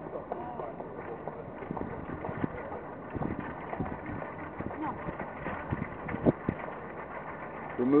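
Busy city riverside ambience: indistinct chatter of passers-by mixed with a steady hum of traffic, with scattered short clicks like footsteps. A man's voice comes in right at the end.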